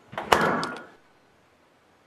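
Refrigerator door swinging shut with a thump about a third of a second in, followed by a brief rattle and clink from the shelves, over in about a second.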